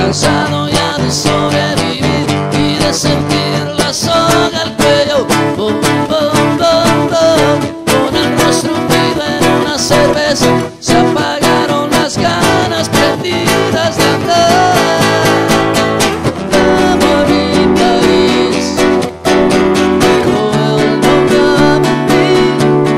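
A man singing a rock song live while strumming a nylon-string classical guitar, voice and guitar alone.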